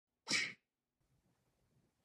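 A single short vocal burst, about a quarter of a second long, shortly after the start, then silence.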